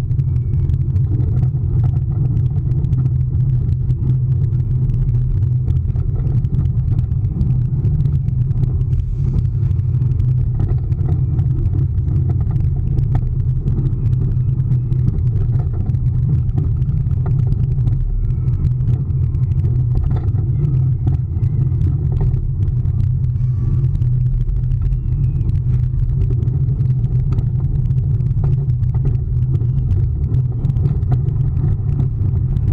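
Steady low rumble of a roller coaster train running along its steel track, heard from a camera on the front of the train, with wind on the microphone.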